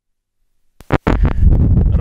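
A wireless lavalier microphone's audio is completely cut out for most of the first second, the kind of dropout of the radio link heard in this long-range test. It comes back with a couple of clicks and then loud wind rumble and handling noise on the mic as the transmitter is clipped back on.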